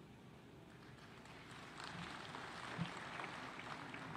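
Faint applause from a seated audience, swelling about two seconds in.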